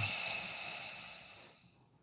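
A man's long breath out through the nose close to the microphone: a sudden hissing rush of air that fades away over about a second and a half.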